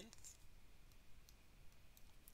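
Near-quiet room tone with a few faint, scattered clicks of a stylus tapping on a tablet screen while handwriting.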